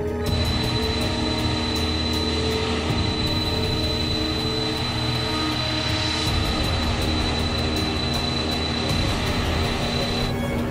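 Jet airliner engine noise, a steady rush with a high whine, starting suddenly, over background music.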